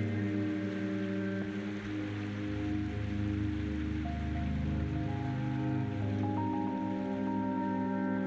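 Background music: slow ambient music of long held chords whose notes shift every second or two, over a soft steady hiss.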